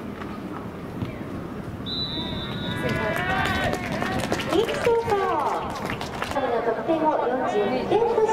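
A referee's whistle blows once, a short steady shrill note about two seconds in, ending the play. Then many voices shout and cheer as the play ends in a touchdown.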